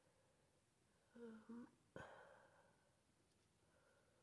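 Near silence, broken about a second in by a short two-part hum from a woman, like "mm-hmm", and a single faint click a moment later.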